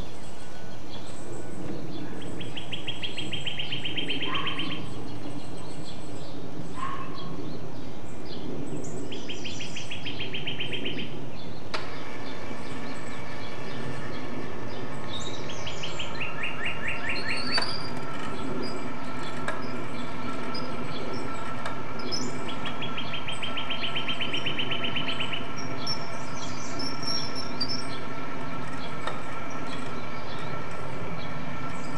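A songbird singing a rapid, high trill about two seconds long, four times over the span, with scattered higher chirps, over a steady low background rumble.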